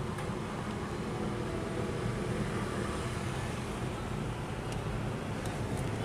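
Steady low vehicle rumble heard from inside a car's cabin, with a few faint clicks near the end.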